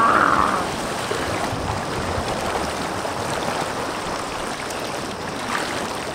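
Shallow mountain river rushing over rocks in rapids, heard close to the water surface as a steady, even rush. It is a little louder for about the first half second.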